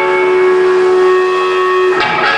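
A live rock band's amplified instruments hold one steady note with its overtones, a drone that ends as the full band comes in at the close.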